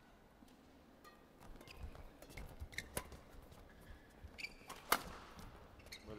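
Badminton rackets striking a shuttlecock in a fast doubles rally: a run of sharp cracks, the loudest about five seconds in, with short squeaks of shoes on the court mat.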